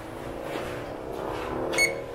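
A vehicle engine humming steadily, its pitch rising slightly, and near the end one short high electronic beep as the ANCEL PB100 power probe is connected to power.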